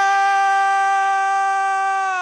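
A male football commentator's long, loud shout held on one steady high note as a goal is scored.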